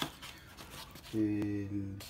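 Pulp-cardboard egg trays in a plastic bag being handled: a sharp click at the start, then faint rustling. It is followed by a man's drawn-out 'ee' hesitation, the loudest sound.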